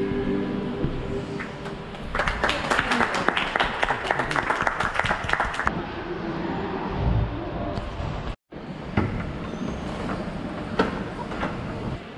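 A men's chorus holding the closing chord of a Christmas carol, then a few seconds of applause from a small crowd. After that, background chatter in a large echoing space.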